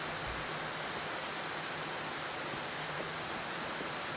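Steady machine noise from a rope-processing machine running as it feeds a climbing rope over a guide wheel: an even hiss with a faint low hum.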